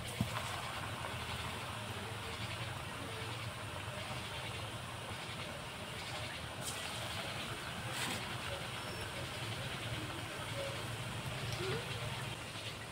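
Hot oil sizzling steadily in an aluminium karahi as balls of gram-flour-bound yam kofta mixture deep-fry, with a low hum underneath and two faint clicks about seven and eight seconds in.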